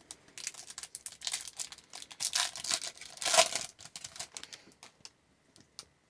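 Foil trading-card pack wrapper crinkling as it is torn open by hand, in quick rustling crackles that are loudest about three and a half seconds in. It is nearly quiet for the last second or so.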